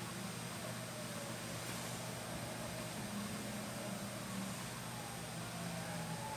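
Quiet room tone: a steady faint hiss and low hum, with no distinct handling sounds from the fly tying.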